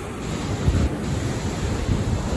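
Wind buffeting the microphone in irregular low gusts over the steady wash of sea surf breaking against the boulders of a rock breakwater.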